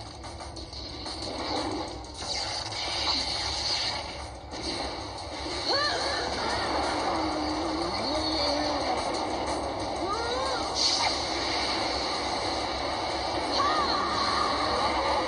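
Anime battle soundtrack coming from a tablet's speaker: background music under a continuous wash of action sound effects, with a few short rising-and-falling cries around the middle.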